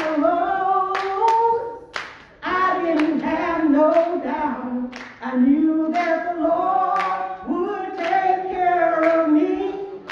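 A woman singing a gospel song unaccompanied in long held phrases, with hand claps now and then alongside the singing.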